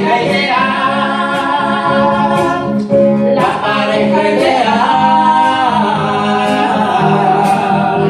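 A woman singing long, held notes of a ballad, accompanied by a strummed acoustic guitar.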